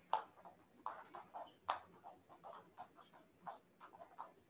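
Several people skipping rope on foam mats: a faint, quick, irregular patter of rope slaps and foot landings, with a couple of louder taps.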